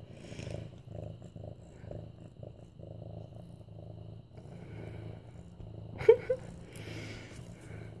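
Young medium-haired orange tabby cat purring steadily while being petted, a continuous low rumble. About six seconds in, a brief pitched sound comes twice over the purring.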